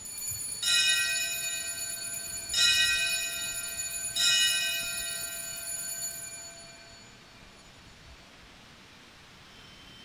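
An altar bell is rung three times, about two seconds apart, each ring sustaining and fading away by about seven seconds in. It marks the elevation of the chalice just after the consecration of the wine at Mass.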